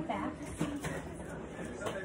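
Quiet, indistinct speech with a few faint clicks of handling.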